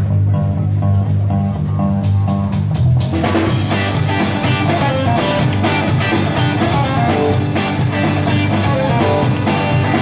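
A rock band playing live: the song opens with low held bass notes under a quick repeating guitar figure, and the drum kit and full band come in about three seconds in.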